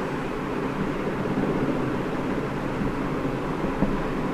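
Steady background noise, an even hum and hiss that does not change.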